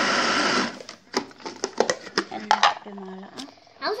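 Electric garlic chopper grinding peeled garlic cloves, running steadily and then cutting off about two-thirds of a second in. Several sharp clicks and knocks follow as the chopper bowl is handled.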